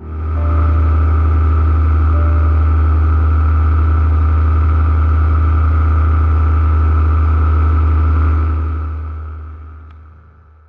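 Engine and propeller of a small powered aircraft running steadily in flight, a deep hum with a higher steady tone over rushing air. It fades out over the last second or two.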